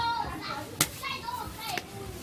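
People's voices talking, with a sharp click a little under a second in.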